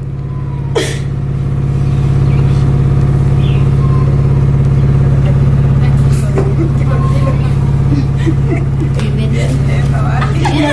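A steady, low engine hum with a slight regular pulse, like a motor vehicle idling, growing louder about two seconds in and easing a little around six seconds. Faint voices sound under it.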